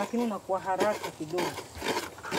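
Speech: a voice speaking in short phrases, giving instructions.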